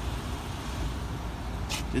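Steady low rumble of outdoor background noise with no distinct event.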